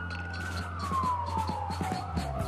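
Siren wailing in one slow glide, peaking about a quarter of the way in and then falling steadily in pitch, over a low steady hum and faint rapid ticking.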